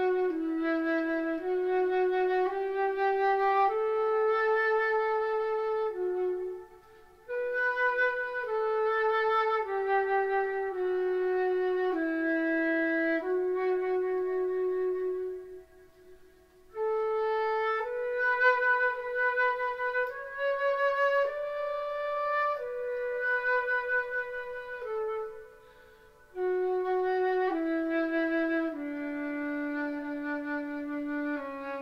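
Solo concert flute playing a slow melody of held notes, one note at a time, with three short pauses between phrases.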